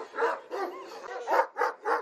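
Large Anatolian shepherd dog barking repeatedly, about five or six short barks in quick succession.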